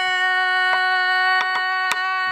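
A woman singing pansori holds one long, steady note. Three sharp strokes on a buk barrel drum fall under it, the last and loudest near the end.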